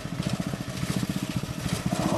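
Small engine idling with a steady, fast, even putter.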